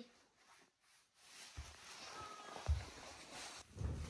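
Near silence for about a second, then faint room noise with three soft low thumps about a second apart and a faint voice in the background.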